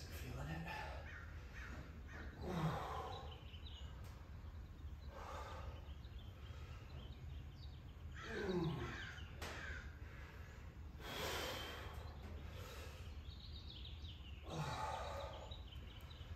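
A woman's effortful breathing, exerting during kettlebell squats with overhead presses: short groans that fall in pitch and breathy exhales, about one every three seconds. A steady low hum runs underneath.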